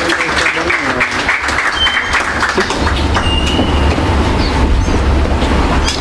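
Audience applauding for about the first three seconds, then the clapping gives way to a steady low rumble.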